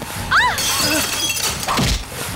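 Glass shattering in a film fight scene, a dense crash of breaking fragments lasting about a second, preceded by a short shout and over background score.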